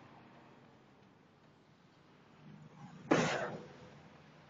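A single short cough about three seconds in, just after a low throat sound, over faint steady background noise.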